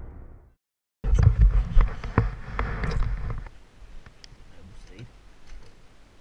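The decaying tail of a logo-intro boom, then after a short gap a loud low rumble with sharp knocks for about two and a half seconds: wind and handling on a helmet-mounted action camera. It then drops to faint scattered ticks and rustles.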